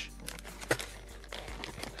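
Plastic soft-bait packet crinkling and rustling in the fingers as its top edge is worked open, with a few light clicks.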